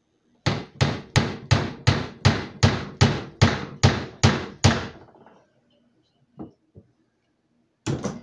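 Hammer driving a long nail down through a wooden handle to pin a frog gig's metal ferrule: a dozen even strikes, about three a second, then two light taps.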